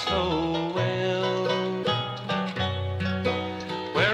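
Bluegrass music from a 1960s vinyl record, played on banjo, guitar, mandolin and string bass.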